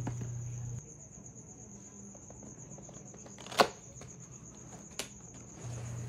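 Quiet handling of a cardboard laptop box as its lid is opened, with one sharp snap about halfway through and a fainter tap near the end. A faint steady high-pitched whine runs underneath.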